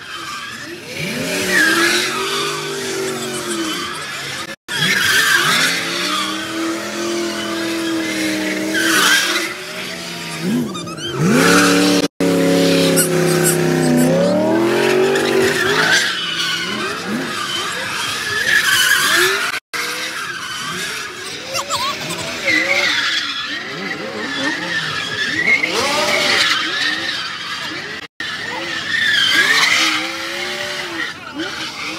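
Cars spinning donuts: engines revving up and down, with tires squealing and skidding. Several short clips are joined by abrupt cuts, each a brief dropout, about four times. Crowd voices sound under the cars.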